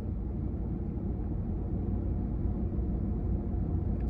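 Steady low rumble of a parked vehicle's engine idling, heard from inside the cab.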